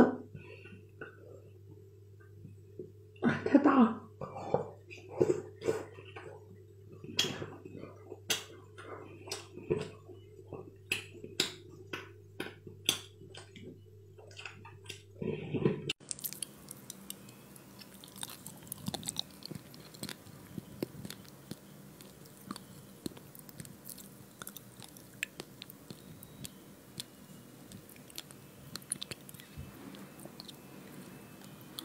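Close-miked chewing of sausage chunks: irregular wet mouth clicks and smacks over a low steady hum. About halfway through it changes to a fainter, denser crackle of fish roe being eaten off a spoon and popping in the mouth, picked up by a binaural microphone.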